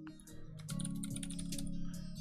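Typing on a computer keyboard, a run of quick key clicks, over steady background music.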